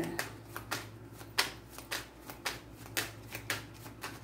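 A deck of cards being shuffled by hand, overhand: a quick run of short, soft, irregular riffling slaps, about three or four a second.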